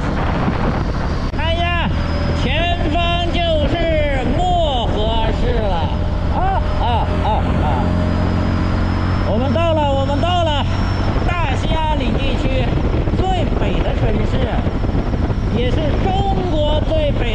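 Motorcycle engine running steadily at road speed under wind and road noise. A man's voice calls out and laughs over it at times.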